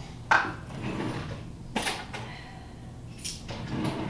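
Short sharp knocks and clatters of kitchen things being handled as a spoon is fetched: one about a third of a second in, another about a second and a half later, then a fainter one.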